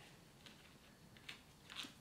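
Near silence, with a few faint short clicks and rustles from a hand working in a denim apron pocket.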